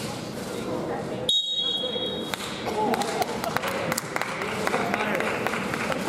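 Indistinct voices murmuring in a school gymnasium. About a second in, the background drops out and a high steady beep sounds for about a second; then the voices return with a run of sharp clicks.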